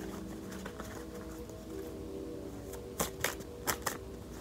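Soft background music with held tones, then four sharp clicks of a tarot deck being shuffled by hand about three seconds in.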